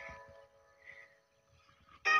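Near silence, with only a faint short sound about a second in.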